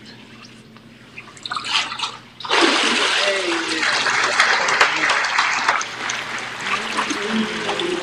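Water in a baptistry pool splashing and churning as a person is plunged under and brought back up, starting suddenly about two and a half seconds in, then sloshing and streaming off their robe.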